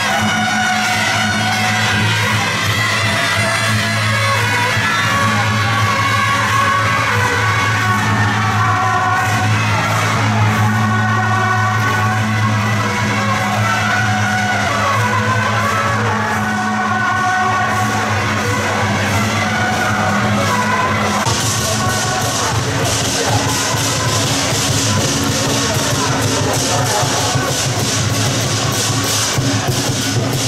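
A marching wind band of clarinets and other wind instruments playing a melody over steady low notes. About two-thirds of the way through, loud clashing cymbals and drums of a lion dance troupe take over.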